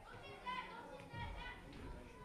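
Children's voices speaking, faint and indistinct.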